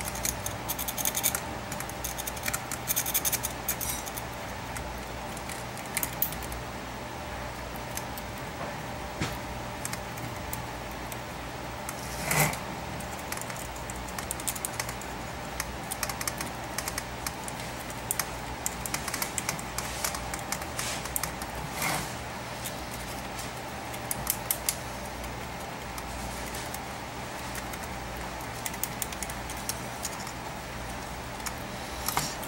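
Small, irregular scratching and ticking as a pointed metal tool scrapes and picks across the solder side of a circuit board, with a sharper click about twelve seconds in and another about ten seconds later. A steady low hum runs underneath.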